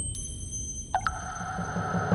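Electronic intro music: thin, steady, high synthesized tones over a low rumble. About a second in, a quick upward sweep settles into a held tone.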